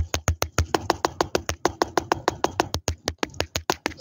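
Fast, even tapping directly on a camera lens, close on the microphone, about eight to ten taps a second.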